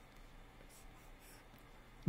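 Near silence, with faint scratching of a pen stylus drawing strokes on a tablet screen.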